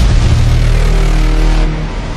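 Cinematic title-intro sound effect: a loud, deep, sustained rumble with a hiss over it, easing slightly near the end.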